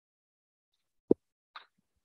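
Near silence broken by one short, sharp pop about a second in, followed half a second later by a fainter brief rustle.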